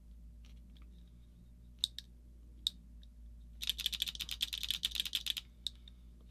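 Electronic paintball marker being dry-fired: two single sharp clicks, then a rapid string of clicks, about fourteen a second, lasting nearly two seconds.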